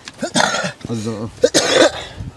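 A person coughing twice, with a short bit of men's speech between the coughs.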